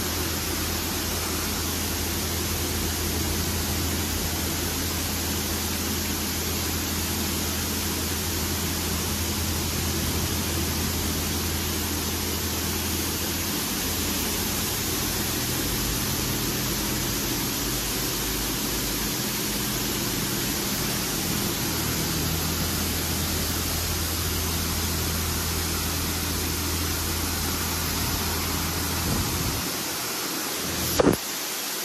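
Washworld Razor touchless car wash spraying high-pressure water over a car: a loud, steady hiss of spray with the low, steady hum of the pump underneath, dipping briefly near the end.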